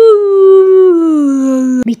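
A long howling call on one drawn-out voice, sliding slowly down in pitch, then cut off suddenly near the end.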